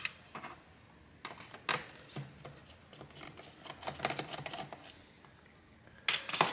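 Light, scattered clicks and taps of laptop screw removal: a Phillips screwdriver working on the plastic bottom panel and small screws dropped into a plastic tray. The sharpest click comes right at the start, and a run of small ticks follows about four seconds in.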